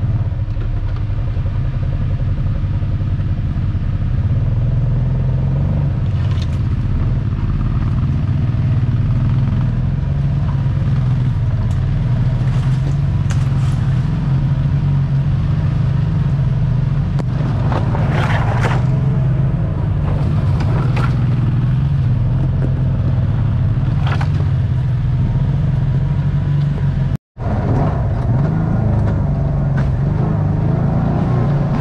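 Kawasaki Teryx side-by-side's V-twin engine running steadily as it crawls over a rocky trail, with scattered clattering from the machine jolting over rocks. The sound cuts out for a moment near the end.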